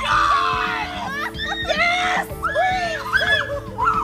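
A woman's high-pitched cries and shrieks of pain, several in quick succession, as a large pimple on her belly is squeezed. Steady background music plays underneath.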